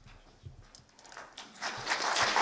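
A few faint thumps and clicks, then audience applause starting about one and a half seconds in and swelling quickly.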